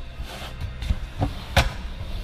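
A few short knocks and clicks, the sharpest about one and a half seconds in, over a low steady hum.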